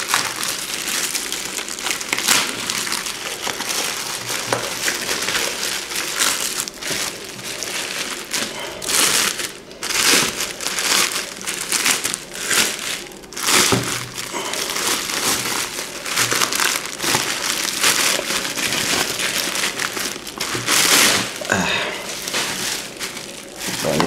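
Plastic shipping bag and bubble wrap crinkling and rustling as a boxed laptop is pulled out and unwrapped by hand. The handling comes in uneven bursts, loudest about ten seconds in and again near the end.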